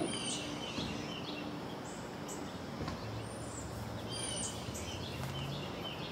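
Small birds chirping here and there over a steady outdoor background hum. From about three seconds in, a faint low engine drone joins in, which is taken for the garbage truck coming down the street.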